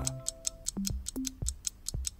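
Quiz background music with a steady clock-like ticking beat, about five quick ticks a second over short, plucked-sounding bass notes.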